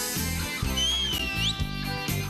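Rock-style band music from a military vocal-instrumental ensemble: electric guitar, bass guitar and drum kit playing the opening of a song just after a drum fill. A high sliding note sounds over the band near the middle and bends up at its end.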